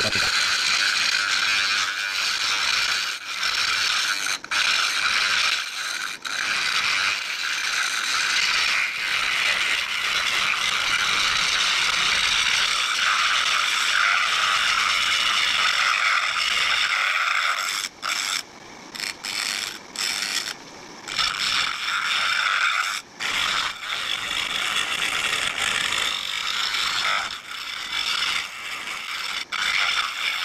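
A turning tool cutting the face of a spinning wood disc on a lathe: a steady, loud hiss of shavings peeling off the wood. There are several brief breaks in the second half where the tool comes off the cut.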